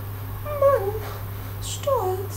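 A high call that falls in pitch, repeated at an even pace about once every second and a quarter, over a steady low hum.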